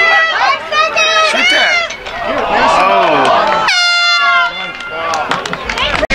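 Voices of players and spectators shouting during a lacrosse game, with one long, loud yell about four seconds in.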